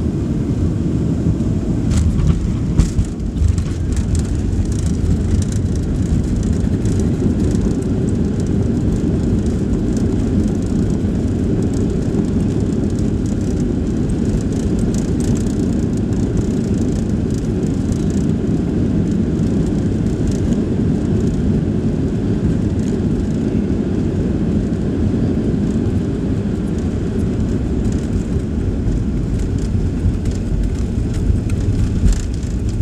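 Cabin noise of a Boeing 737 Next Generation airliner touching down and rolling out: a brief jolt and rattle about three seconds in, then a steady loud rumble from its CFM56 engines and the landing gear on the runway, with rattling from the cabin fittings.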